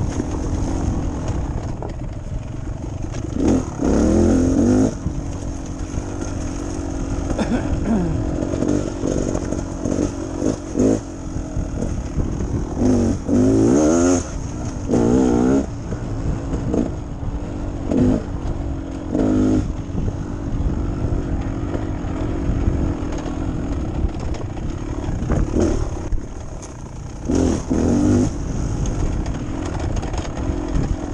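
Beta Xtrainer two-stroke dirt bike engine running under way on trail, with repeated throttle bursts where the pitch rises and falls, most strongly about a few seconds in, around the middle and near the end. Short knocks from the bike working over the rough ground are scattered through it.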